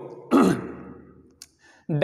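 A man's breathy, voiced exhale, sudden at first and fading away over about a second, followed by a faint click.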